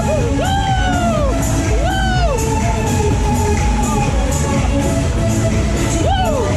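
Loud fairground music with a steady beat played over a waltzer ride. Two long rising-and-falling whoops from riders come in the first two seconds or so.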